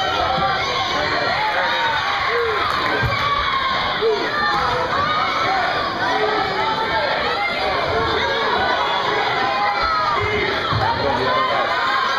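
Spectators shouting and cheering, many voices overlapping without a break.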